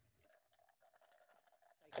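Near silence: faint room tone, with a woman's voice starting right at the end.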